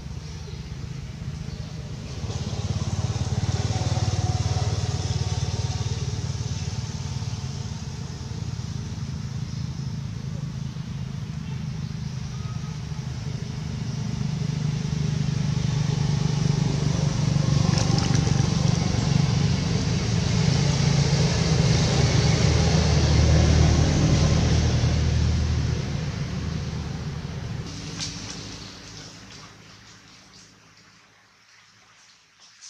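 A motor vehicle engine running nearby, a steady low rumble that swells louder through the middle and fades away near the end.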